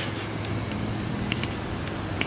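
Diesel locomotive running as it approaches, a steady low engine drone.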